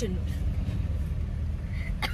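Steady low rumble of a Toyota Land Cruiser safari vehicle on the move, heard from inside the cabin.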